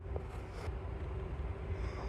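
Steady low background rumble with a faint constant hum, no distinct events.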